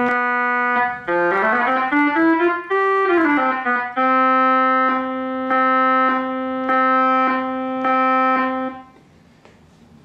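Hammond Solovox, a 1940s monophonic vacuum-tube keyboard instrument, playing with its brilliant tone setting on, which brings up the higher overtones: a held note, a quick run of notes up and back down, then one note played over and over at an even pace until it stops about a second before the end.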